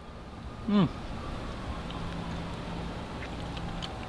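A man's short appreciative "mmm" as he chews a mouthful of fried snake, then a steady low background hum.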